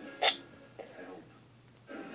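A single short, sharp sound from the mouth or throat about a quarter second in, followed by faint low sounds.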